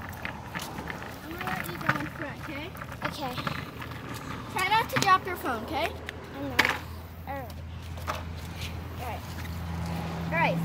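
Skateboard wheels rolling on a concrete sidewalk, a low steady rumble that grows stronger partway through, with a few sharp knocks. Over it come children's high-pitched wordless cries and squeals, bunched around the middle.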